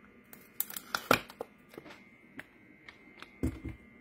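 Light handling noises: scattered small clicks and crinkles, with a sharper click about a second in and a soft low thud near the end.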